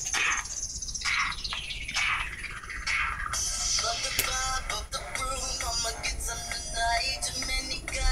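Pop song playing: a few seconds of sweeping intro sounds, then a sung vocal over the backing track comes in about three seconds in.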